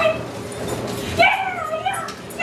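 A dog giving a short, high-pitched whine a little over a second in; the whine dips and then rises in pitch.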